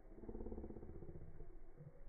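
A faint engine running, its pitch shifting up and down.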